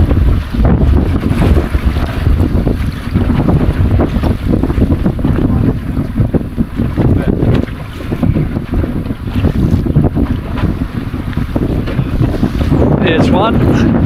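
Strong wind buffeting the microphone in uneven gusts, over choppy sea water slapping against a small boat's hull.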